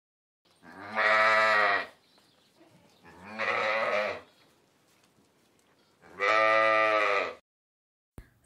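Domestic sheep bleating three times, each bleat about a second long and a few seconds apart, the middle one a little quieter.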